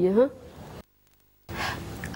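The end of a spoken word, a brief dead-silent gap, then a woman's short breathy gasp in distress near the end.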